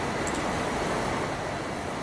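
Steady background noise with no distinct events: room tone with a low rumble, the kind of hum that air conditioning and the hall's PA give.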